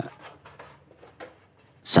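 Faint rubbing and scraping of fingers working a firmly glued LED backlight strip loose from the TV's metal back panel, with one small click a little past a second in.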